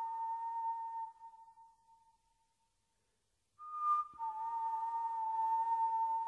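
A woman whistling long, steady held notes. One note fades out about a second in. After a short silence, a brief higher note comes, then a click, then another long lower note that holds.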